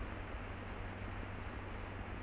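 Steady hiss with a low hum from an old film soundtrack, with no other distinct sound.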